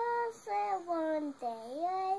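A young girl's voice in a drawn-out sing-song of three phrases, the last dipping low and rising again, as she 'reads' a picture book aloud without clear words.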